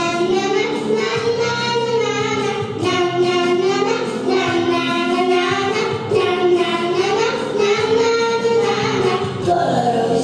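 Two young girls singing a duet into microphones, holding long notes in a gliding melody, with steady instrumental accompaniment underneath.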